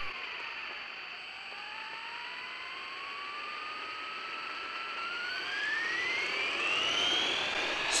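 Electric motor of an RC buggy (Arrma Typhon) whining as it drives. The pitch dips briefly about a second in, then rises steadily as the car speeds up and levels off near the end, growing louder.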